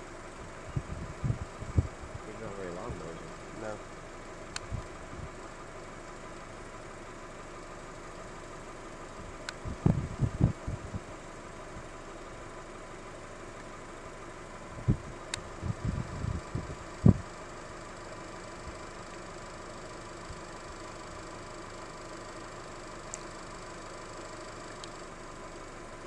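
A steady low background hum broken by irregular clusters of low rumbling bumps, strongest about ten seconds in and again around fifteen to seventeen seconds, with a brief murmur of voices near the start.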